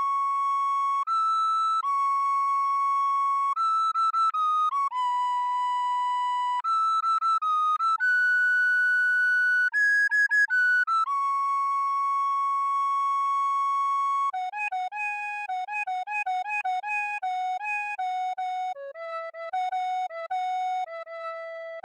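A recorder plays a solo melody one note at a time. The first part is long, held notes in its upper register; from about two-thirds of the way in it moves to a quicker run of lower notes, about an octave down.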